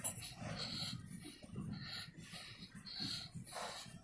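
Footsteps of someone walking on a hard tiled floor, about two steps a second, each step a short scuffing sound over a low background rumble.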